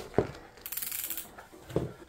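A cycling shoe is pulled onto the foot, then its lacing dial is turned with a quick run of ratcheting clicks to tighten it.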